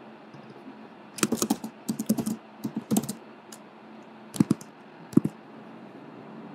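Computer keyboard typing: a quick run of keystrokes starting about a second in and lasting a couple of seconds, then two louder separate clicks near the end.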